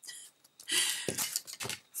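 Handling noise from a plastic fountain pen and a plastic ruler being moved by hand: a short rustle followed by a few light clicks in the second half.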